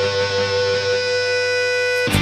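Background music led by guitar, a chord held steady.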